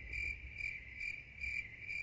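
Crickets chirping, laid in as the comic 'crickets' sound effect over an empty room: a steady high trill that pulses about twice a second.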